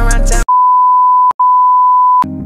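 Hip-hop music cuts off about half a second in and gives way to a loud, steady, single-pitch beep: the test tone that goes with a TV colour-bars screen, with one brief break in the middle.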